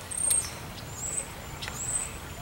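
Several short, thin, high-pitched bird calls, some slightly slurred in pitch, over faint outdoor background, with a brief crackle of handled paper a fraction of a second in.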